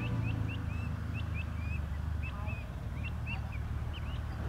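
Small birds chirping: a quick string of short, high chirps, some rising and some falling, over a low steady rumble.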